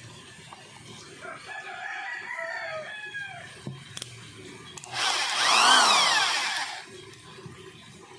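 A rooster crowing once, loudly, about five seconds in: one harsh call of nearly two seconds that rises and then falls in pitch. Before it come softer, shorter chicken calls.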